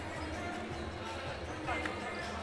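Basketball arena ambience during a stoppage in play: a steady low hum of the crowd with faint music over it, and a faint voice near the end.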